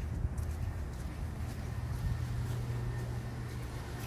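Footsteps walking into a shop, over a steady low hum.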